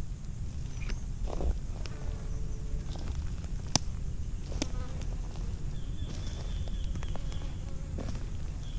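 Outdoor ambience with a faint steady insect buzz that grows clearer about three quarters of the way in, over a low rumble, with a couple of sharp clicks in the middle.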